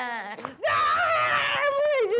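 A man's drawn-out wail slides down and breaks off, then loud, high-pitched screaming with a wavering pitch starts just over half a second in as he is beaten.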